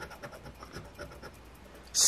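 A coin scraping the scratch-off coating of a lottery ticket in a few short, faint strokes, stopping after about a second.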